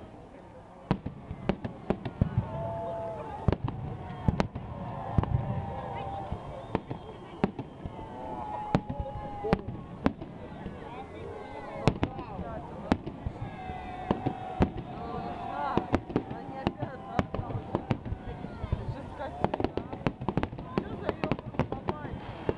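Fireworks display: aerial shells bursting in a string of sharp bangs every second or so, thickening into rapid crackling near the end.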